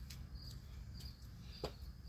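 Crickets chirping steadily, a short chirp about twice a second, with one thump near the end from a foot landing on a concrete step.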